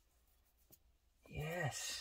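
Near silence with one faint click, then a man's quiet muttered words near the end.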